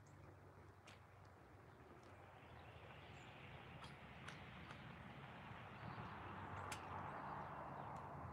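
Faint outdoor ambience: a low, even hiss that grows a little louder toward the end, with a few faint, scattered clicks.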